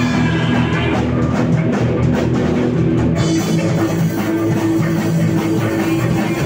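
A live rock band playing loudly, with electric guitar and a drum kit keeping a steady beat.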